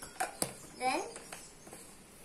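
Plastic lid being put back onto a jar of turmeric powder, with two sharp clicks near the start and a few fainter ones later. A brief child's voice sound about a second in.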